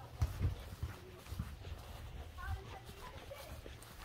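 Footsteps on a concrete driveway with handling bumps on the phone while walking: a run of soft low thuds. A faint, brief pitched call sounds a little past halfway.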